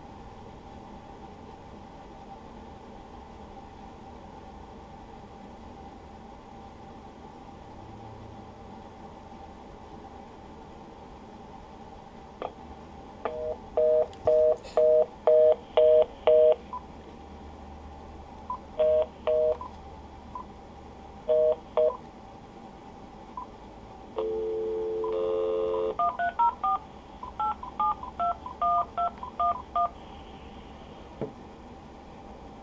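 Touch-tone (DTMF) key beeps from a Uniden cordless phone handset, keying digits into an automated phone menu. The line is quiet with a faint steady tone for about the first twelve seconds. Then come a quick run of about seven beeps, a few separate beeps, one longer tone and a fast run of short beeps near the end.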